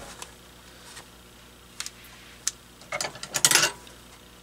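Light plastic clicks and scrapes from handling a Sony VAIO laptop's battery and its lock and release latches, with a short run of rattling clicks about three seconds in.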